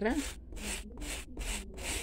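A hand brush scrubbing the soaped rubber sole of a sneaker in quick back-and-forth strokes, about three a second, working dirt out from between the sole's lugs.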